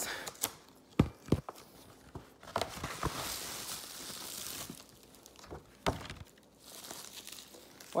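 Plastic bubble-wrap packaging being torn open and crinkled by hand, with a few sharp clicks and knocks and a longer tearing rustle from about three to nearly five seconds in.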